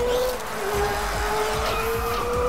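Cartoon race-car sound effects, an engine running with a fast low pulsing as the car spins through its tyre smoke, over background music with one long held note.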